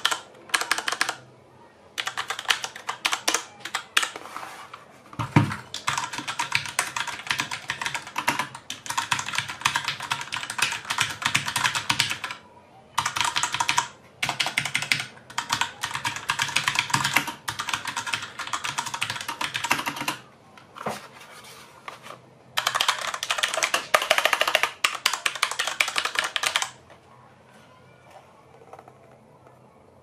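Fuhlen G610 60% mechanical keyboard with Cherry MX Brown tactile switches being typed on fast, in bursts of rapid keystrokes with short pauses between them. There is a single heavier thump about five seconds in, and the typing stops a few seconds before the end.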